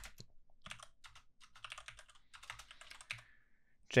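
Typing on a computer keyboard: a few quick runs of keystrokes.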